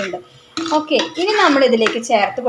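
A metal spoon clinking and scraping against an earthenware curry pot while a thick curry is stirred, with a sharp click near the end. A woman talks over it.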